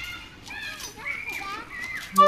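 Young children's voices calling and chattering as they play, faint and high-pitched.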